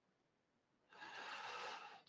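Near silence, then about a second in a soft in-breath lasting under a second.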